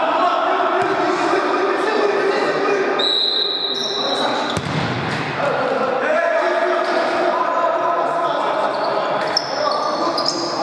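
Futsal game in a reverberant gym hall: players calling out, with the thuds of the ball being kicked and bounced on the floor. Short high squeaks come near the end.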